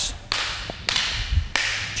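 Eskrima fighting sticks clacking together in a partner striking drill: three sharp cracks a little over half a second apart, each trailed by a brief hiss.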